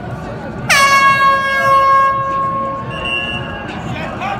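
A single blast from an air horn, starting abruptly about a second in, held loud for about a second and then fading away, over voices in the background.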